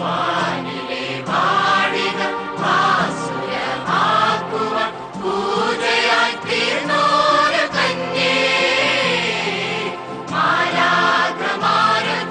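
A choir singing a slow religious chant, with voices rising and falling over a steady held accompaniment.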